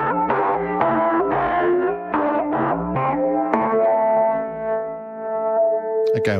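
Steel guitar notes from the Steel Guitar Pro app, played from a keyboard and run through the Combustor time-bending resonator at its Init preset. A quick run of notes, several bending in pitch, ends in one note held for the last couple of seconds.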